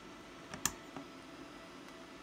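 An RJ45 Ethernet plug clicking into a Raspberry Pi's Ethernet port. There are two quick sharp clicks about half a second in as the plug's latch seats, then a softer click about a second in.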